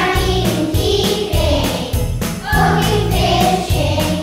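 Children's choir singing a song over backing music, with a steady percussion beat.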